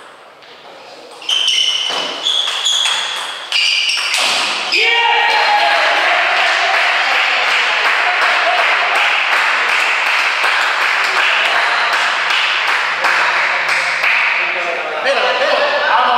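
Table tennis rally: a plastic ball pings off the table and bats several times, roughly half a second apart. A shout then marks the end of the point, followed by loud, sustained crowd noise with voices.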